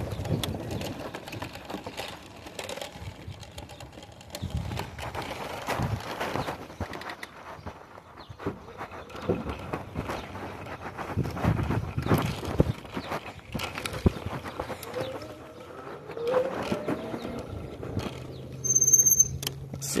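Electric bike being ridden, its frame, basket and cup holder giving irregular knocks and rattles over a wooden bridge deck and trail, under a steady rush of wind and road noise. A short high-pitched beep sounds near the end.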